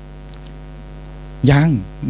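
Steady electrical mains hum from the lecture's microphone and PA chain through a pause, with a man's voice saying one short word near the end.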